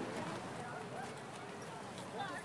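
Voices of people talking in an outdoor crowd, none of them close or clear.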